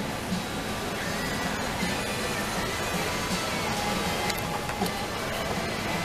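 Music playing under a steady wash of background noise, with no clear single event standing out.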